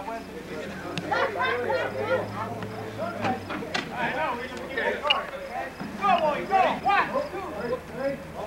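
Several people talking over one another, with a few sharp knocks in between.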